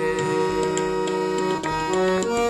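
Harmonium playing an instrumental phrase of held reed notes that move to new notes near the end, over a light, regular ticking beat.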